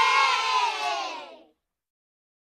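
A crowd of voices cheering together, the cheer trailing off and falling in pitch before it cuts off about one and a half seconds in.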